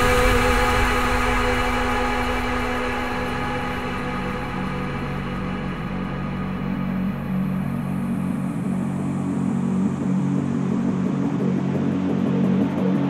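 Liquid drum and bass in a DJ mix, at a quiet passage between tracks. Drums and vocal have dropped away, leaving long, held low synth chords, and the treble is gradually filtered out through the second half.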